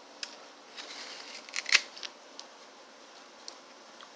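Biting into a red apple and chewing it: a quick cluster of sharp crunches, loudest a little before halfway, then a few lighter chewing clicks.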